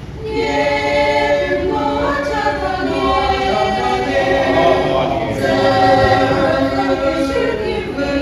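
Mixed choir of men and women singing a sacred song in several parts, with no instruments heard. The singing comes in again just after the start, after a brief breath.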